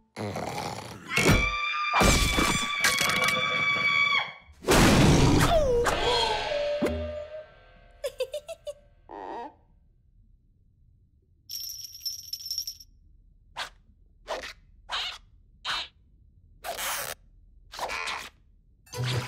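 Cartoon score and comic sound effects: loud music stings with a falling comic glide in the first seven seconds. Near the middle comes a brief high chime, then a string of short, separate plucked or tapped sounds spaced under a second apart.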